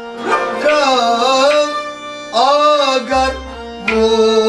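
A male singer sings a Kashmiri kalaam in two long, gliding phrases over a steady held-note instrumental accompaniment.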